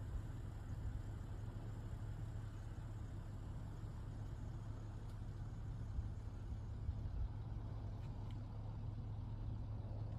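Steady outdoor background rumble with a constant low hum underneath and no clear events.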